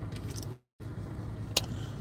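Steady low rumble of a car cabin, which drops out completely for a moment about half a second in, with a single sharp click a little later.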